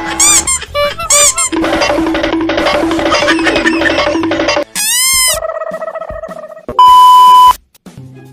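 Comedy sound effects edited over the footage: a jingle of repeated short notes, then a swooping cartoon sweep that rises and falls about five seconds in. Near the end comes a loud, steady single-tone beep like a censor bleep.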